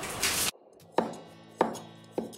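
Cleaver chopping lemongrass on a wooden cutting board: two sharp chops about half a second apart, in the second half.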